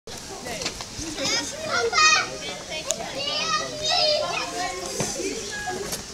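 Several children talking and calling out at once, high voices overlapping, with the loudest call about two seconds in.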